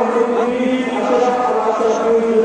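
Devotional chanting by voices on long, steady held notes, shifting pitch near the end.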